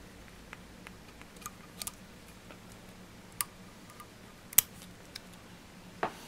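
A few light clicks of small tools at a fly-tying vise, the loudest a sharp snip a little past halfway: fine scissors trimming off the tied-off stem of a pheasant rump feather.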